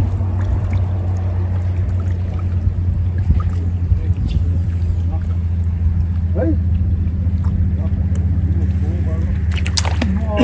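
A motor running steadily, a constant low hum with no change in pace. A faint voice is heard about six seconds in.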